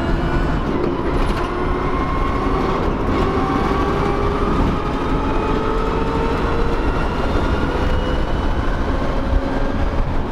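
Electric-converted vintage car driving, heard from inside its bare cabin: a steady rumble of road and wind noise, with the electric motor's faint whine rising slowly in pitch as the car gathers speed.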